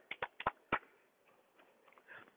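Hand claps by two people: three sharp claps, not quite together, in the first second, followed by three soft stomps on grass that are barely heard.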